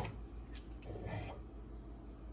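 Pots and pans being lifted off a wire dish rack: a sharp clink at the start, a few light ticks, then a soft scrape of metal against the rack around the middle.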